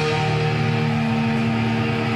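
Thrash metal band playing live, in a break where the drums and cymbals drop out and distorted electric guitars and bass hold a ringing chord. A second held note comes in about a second in.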